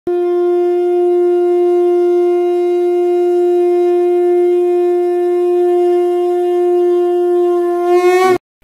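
Conch shell (shankh) blown in one long, steady note. Its pitch lifts slightly near the end.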